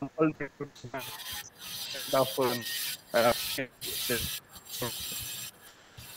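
Rubbing, scratchy noise from a wired earphone's inline microphone being handled close to the mouth. It sets in as a steady hiss about a second in and cuts off shortly before the end, with a few short bits of a man's voice heard over it.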